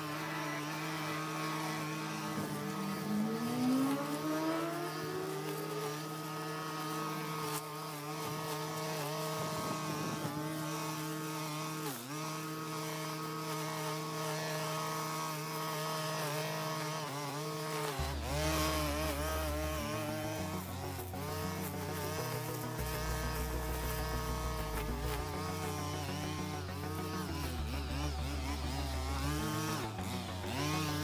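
Gas-powered string trimmer engine buzzing at cutting speed as it cuts grass, revving up a few seconds in, then wavering in pitch as the load changes. Music with a stepping bass line comes in underneath about halfway through.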